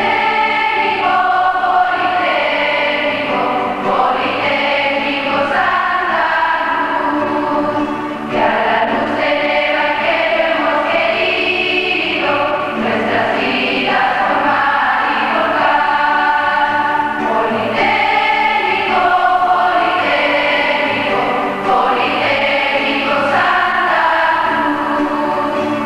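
A choir of schoolgirls and nuns singing the school hymn, holding long sustained notes that change every second or so at a steady level.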